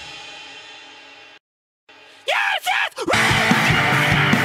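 Hardcore punk band between songs: the last chord of one song rings out and dies away, a moment of silence, a short shout, then the next fast song crashes in with drums, cymbals and distorted guitar about three seconds in.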